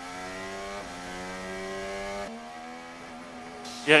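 Onboard sound of a McLaren MCL60 Formula 1 car's Mercedes 1.6-litre turbo V6 hybrid engine running steadily behind the safety car, its pitch stepping slightly twice.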